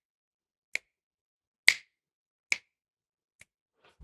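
Finger snaps keeping a steady beat: four crisp snaps, evenly spaced a little under a second apart, the last one fainter.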